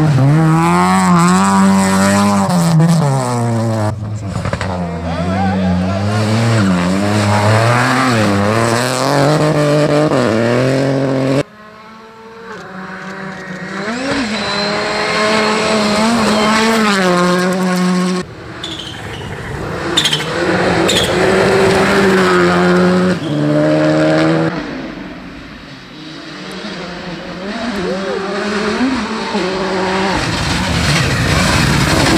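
Rally car engines at full throttle on a gravel stage, a series of separate passes cut together: each engine revs high and drops again through gear changes, with tyre noise on the loose gravel. In the first part it is an Opel Kadett hatchback and later a Hyundai i20 rally car, which comes in from quiet and rises near the end as it approaches.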